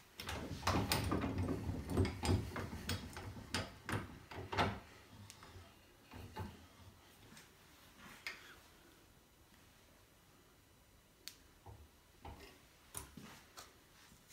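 Wooden workpieces clattering while a metal bench vise is slid and wound shut on them, a dense run of knocks and scraping over the first five seconds. A few scattered light clicks follow near the end.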